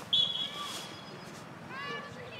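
Referee's whistle: one loud, steady, high-pitched blast that starts sharply and fades over about a second, then players shouting near the end.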